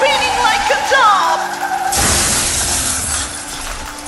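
A cartoon crash sound effect about halfway in: a sudden loud burst of smashing noise that fades away over a second or so, over background music.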